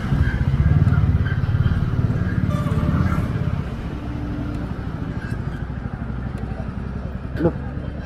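Royal Enfield single-cylinder motorcycle engine running under way, louder for the first few seconds, then dropping to a quieter, lower run as the bike slows. A short sharp sound comes near the end.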